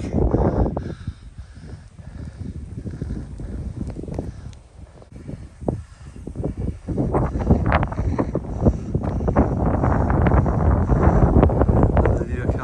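Wind buffeting the microphone in gusts: it eases off in the middle, then swells loud from about seven seconds on.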